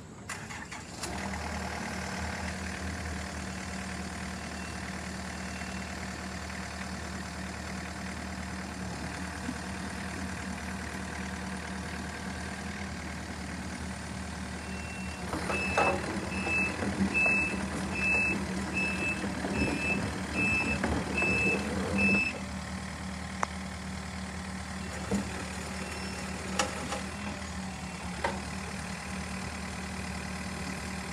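Diesel engine of a Takeuchi TB290 mini excavator running steadily, coming up in level about a second in. Near the middle the machine works louder for about six seconds while a travel alarm beeps at an even pace, and a few single clanks follow near the end.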